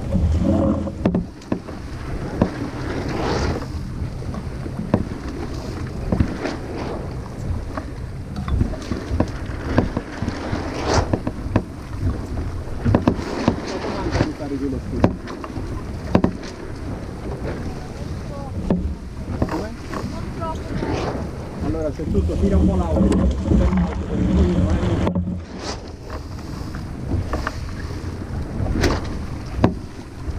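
Wind buffeting the microphone and water rushing along the hull of a small sailboat running under spinnaker, with scattered sharp knocks and clicks on deck.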